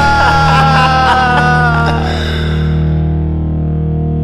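Visual kei rock music: a distorted electric guitar holds a high note that slides slowly down in pitch and stops about halfway through, leaving a sustained low chord ringing.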